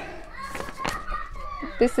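A faint voice under the room sound, with one soft click a little under a second in.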